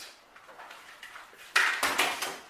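A hand-held metal staple gun set down on a cabinet top: a short clatter of several knocks about a second and a half in, after a quiet stretch.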